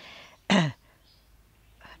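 A woman clears her throat once, briefly, about half a second in, after a faint breath.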